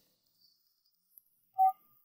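Near silence, then a single short electronic beep from a mobile phone a little over one and a half seconds in.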